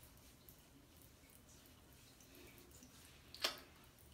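Near silence: faint room tone with a few soft water drips as the wetted face and hands are touched. A brief, louder soft noise comes near the end.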